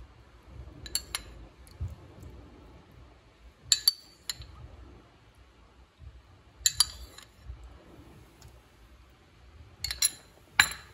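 A metal spoon clinking against a ceramic ramekin as lemon juice is scooped out, in small clusters of sharp clinks about every three seconds.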